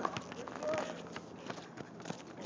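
Players' footsteps on an asphalt basketball court: irregular sharp knocks and scuffs, several a second.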